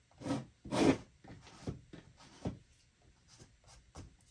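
About four short rubbing strokes across a painted collage canvas, as fresh paint is wiped and brushed over; the second stroke is the loudest.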